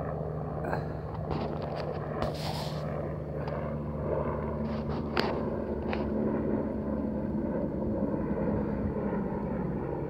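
Aircraft passing overhead: a steady low engine drone, with a few short knocks from the phone being handled.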